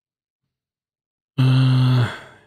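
A man's deep voiced sigh close to the microphone, held on one low pitch, starting suddenly about one and a half seconds in and trailing off at the end.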